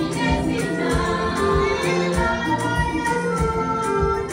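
Women's choir singing a gospel song together into microphones, over an amplified backing with a steady beat of about two beats a second.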